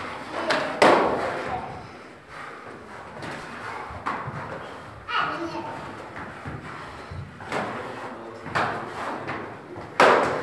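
A series of sharp thuds and slaps from knife sparring, with blows landing and feet stamping on the floor, ringing in an echoing hall. The loudest comes about a second in, and others follow irregularly.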